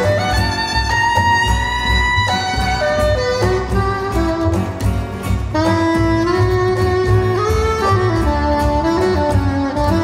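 Soprano saxophone playing a slow melody of long held notes that slide between pitches, over a band's accompaniment with a steady bass.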